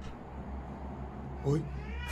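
A brief, pitched, voice-like cry about one and a half seconds in, over a steady low hum: the sound the uploader says is a voice calling "mamá".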